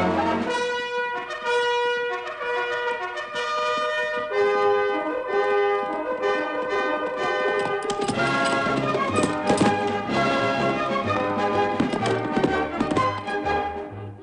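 Orchestral film score led by brass, with trumpets carrying the melody over the band. It grows fuller about eight seconds in.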